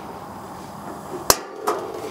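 Propane hissing from the opened burner valve of a Camp Chef Everest two-burner camp stove. A single sharp click of the stove's built-in igniter comes a little over a second in and lights the burner.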